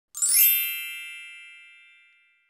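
A single bright chime sound effect, struck once and left to ring, fading away over about two seconds.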